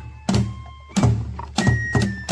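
Festival kagura music for a shishi lion dance: taiko drums struck about three times, slower than the quicker beat either side, with a few high held tones above them.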